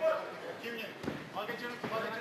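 Voices shouting over two fighters grappling on a ring canvas, with two dull thumps, about a second in and again near the end, as bodies hit the mat.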